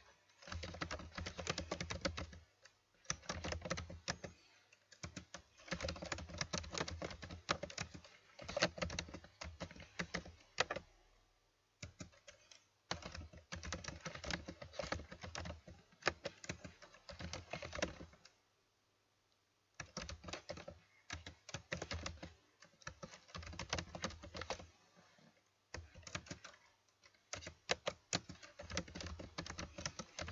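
Typing on a computer keyboard: runs of rapid key clicks lasting a few seconds each, broken by short pauses, the longest about two-thirds of the way through.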